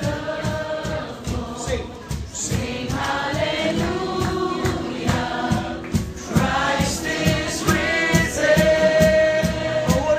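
Live gospel worship song: several voices singing together into microphones, over an acoustic guitar and a steady beat.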